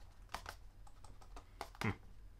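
A few light, irregular clicks and taps from small handling noises, with a short 'mh' from a voice near the end.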